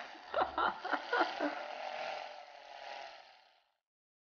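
Handheld battery-powered Aerolatte milk frother whirring, its coil whisk spinning in runny dalgona coffee mixture in a glass bowl. It gives a steady hum with some clicking in the first second and a half, then fades out about three and a half seconds in.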